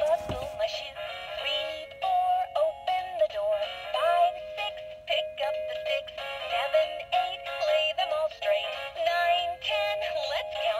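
Fisher-Price Laugh & Learn toy radio playing a children's song through its small speaker: a synthetic-sounding sung melody in short phrases over a steady held tone.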